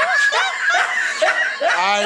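People laughing in quick, high-pitched bursts, about three a second.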